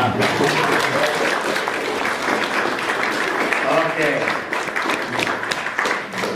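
Lecture-hall audience applauding. The applause breaks out suddenly and keeps going, with a few voices mixed in.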